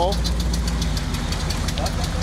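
Mud truck's engine running at low revs in deep water, a steady low drone with a rapid, even ticking over it.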